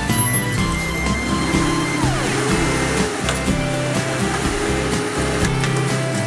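Background music mixed with the running engine and hydraulic lift of a front-loader garbage truck raising its container up over the cab. A whine falls in pitch about two seconds in.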